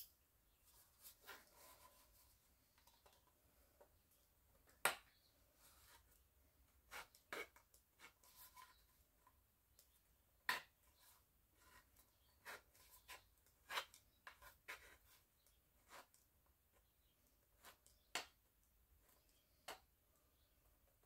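Faint, scattered clicks and ticks of a multi-tool's knife blade cutting into the thin metal of a tin can, a sharp click every second or two, the loudest about five seconds in.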